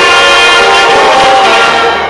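Symphony orchestra with saxophone holding a loud, sustained chord, several steady notes ringing together like a horn.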